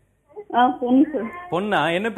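A person speaking, starting about half a second in, in short phrases with the pitch sliding up and down.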